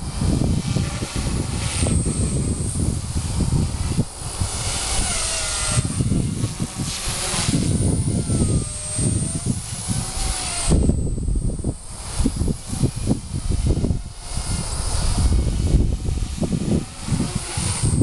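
Walkera 4F200 RC helicopter in flight, its Turbo Ace 352 motor and rotor whining high, the pitch wavering up and down as the throttle and pitch change. A loud, uneven low rumble of wind on the microphone runs under it.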